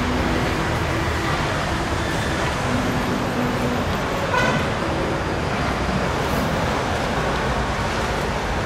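Steady road traffic noise from passing vehicles, with a brief horn toot about four and a half seconds in.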